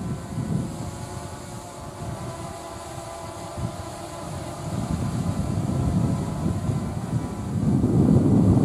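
Distant electric freight train headed by twin-section class 131 electric locomotives approaching: a steady hum over a low rumble that grows louder over the last few seconds.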